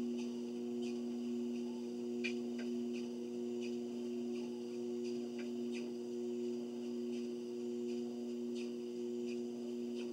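Motorized treadmill running with a steady electric hum, with faint light ticks now and then.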